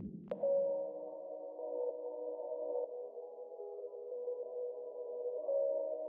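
Soft, sustained synthesizer chord from a trap instrumental beat, held steady with no drums. It enters after a downward pitch-drop effect ends right at the start and a short click follows.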